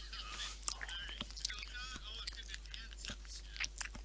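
Faint, indistinct voices and quiet laughter over a voice-chat call, with a few small clicks and mouth noises.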